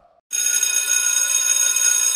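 A school bell ringing steadily, starting about a third of a second in.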